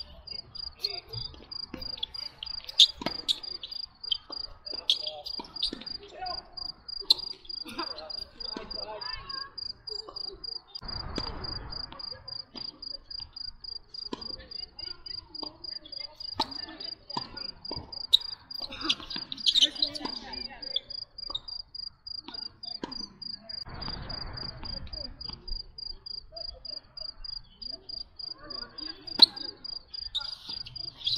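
A cricket chirping steadily in even, high-pitched pulses, with sharp knocks of tennis racquets striking the ball scattered through it, the loudest one near the end.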